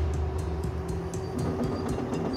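Crawler-tracked drilling rig moving in: its engine runs with a steady low rumble and hum, over a light, rapid clicking from the tracks.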